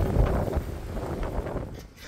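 Strong wind buffeting the microphone of a camera that has toppled onto the court surface: a dull rushing noise, heaviest in the low end, that fades away near the end.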